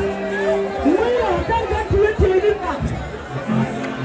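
Many voices speaking aloud at once, as in a crowd praying together, over held musical notes that stop about a second in and come back near the end.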